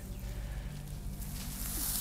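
Faint rustling of dry grass as a king cobra's body slides through it, swelling near the end, over a low steady hum.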